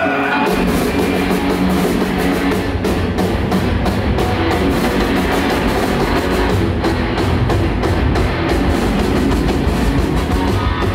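Heavy metal band playing: electric guitars over a fast drum-kit beat, coming in just after the start.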